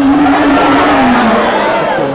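A woman's singing voice holds a long note through an amplified church PA, sliding down in pitch about two-thirds of the way through, over a loud, dense wash of band and voices.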